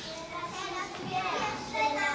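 Children's voices talking quietly and indistinctly, a little softer than the narration around them.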